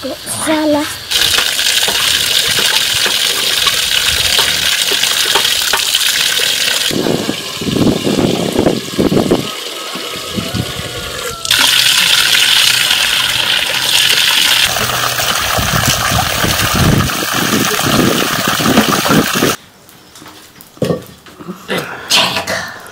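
Water gushing and splashing, loud, in several stretches that start and stop abruptly and cut off sharply near the end.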